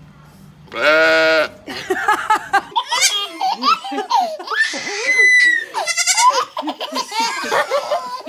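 A goat bleats loudly once, about a second in. After that, a baby and adults laugh and squeal in a long string of giggles.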